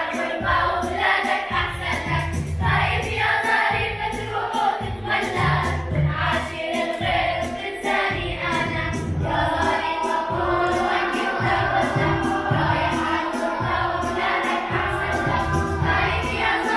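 Children's choir singing, accompanied by piano, with low notes recurring every second or two.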